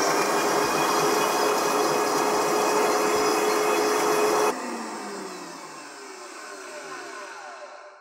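High-powered countertop blender running at full speed on a load of basil, toasted pine nuts, almonds, olive oil and garlic being puréed into pesto. About four and a half seconds in it is switched off, and the motor winds down with a falling whine until it stops near the end.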